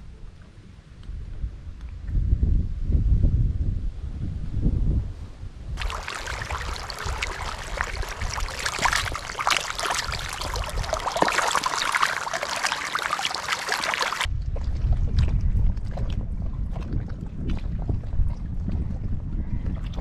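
A crowd of tilapia splashing and churning the water at the pond surface as they feed, a dense splashing that cuts in about six seconds in and stops abruptly some eight seconds later. Before and after it, a low rumble of wind on the microphone over lapping water.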